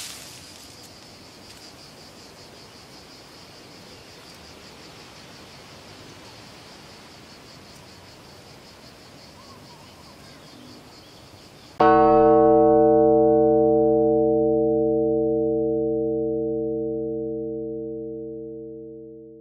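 Faint outdoor background with a steady, high, rapidly pulsing buzz. About twelve seconds in, a sudden loud chord of sustained ringing tones that fades slowly.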